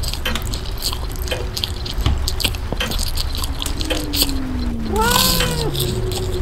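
Experimental sound collage of layered samples: scattered clicks and taps throughout, a low tone that slides slowly downward over the last two seconds, and a short tone with overtones that rises and falls about five seconds in.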